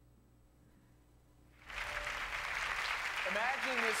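Near silence, then about a second and a half in a studio audience's applause starts suddenly, heard through the room's loudspeakers. A man's voice begins speaking over the applause near the end.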